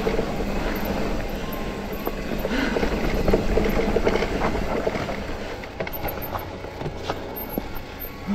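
Electric mountain bike riding a dirt forest trail: steady rumble of tyres over the ground, with scattered knocks and rattles from the bike, easing off somewhat in the second half.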